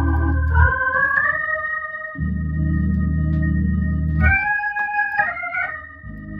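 Viscount Legend drawbar organ played through a Leslie 3300 rotary speaker: slow, sustained hymn chords that change about a second in and again past four seconds, with the low bass notes dropping out twice.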